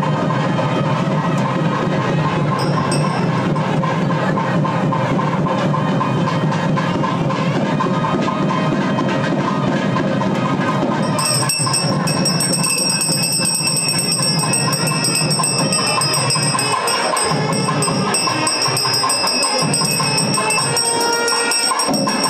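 Music playing throughout, with bells ringing continuously from about halfway through.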